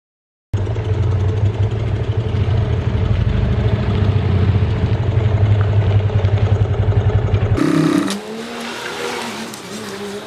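Motorcycle engine running with a rapid, steady throb. It starts suddenly about half a second in and cuts off abruptly about seven and a half seconds in, leaving a fainter sound with a wavering tone.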